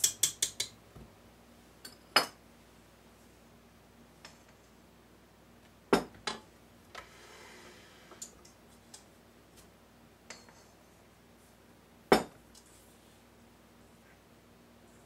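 Metal kitchen utensils knocking and clinking against a stainless steel mixing bowl: a quick run of taps right at the start, then a few separate sharp knocks, the loudest near the end.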